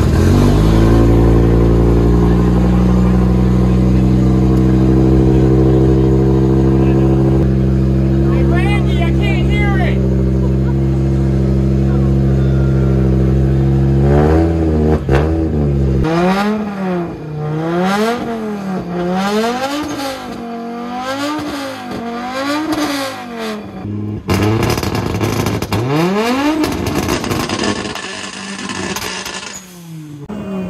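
Audi quattro Group B rally car engine starting suddenly and running at a steady idle for about fifteen seconds. It is then revved in quick repeated throttle blips, about one a second, with one longer rev near the end.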